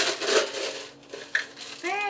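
Ice cubes scraping and rattling as a cup scoops them out of a metal ice bucket, loudest in the first half second. A short voice sound near the end.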